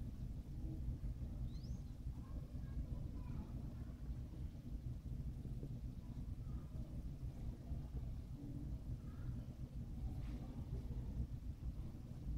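Steady low background rumble, with a few faint small sounds scattered through it.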